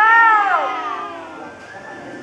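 A woman's voice calling out a long, drawn-out syllable through a handheld megaphone, the pitch rising and then falling. The call ends under a second in, leaving quieter background voices.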